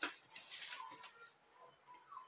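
Faint animal calls in the background: a few short, quiet calls spread through the moment.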